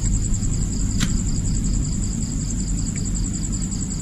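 Crickets singing, a high pulsing trill of about four pulses a second with a second steady high tone above it, over a low rumble; a single sharp click about a second in.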